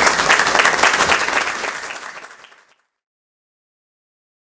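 Audience applauding, a dense patter of many hands clapping that fades out after about two and a half seconds.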